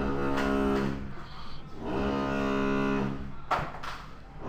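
Construction machinery from building work nearby, running with a steady droning hum in two stretches of about a second and a half each, the second starting about two seconds in.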